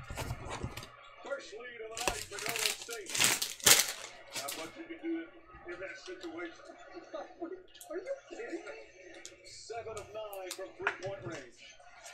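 Foil-wrapped trading card packs being handled and set down on a mat, with a cluster of sharp crinkles and clicks about two to four seconds in, under a faint low murmur of speech.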